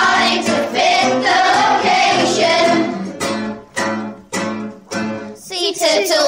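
A children's song: voices singing held notes over instrumental backing, then four or five sharp accented beats with short gaps between them in the second half.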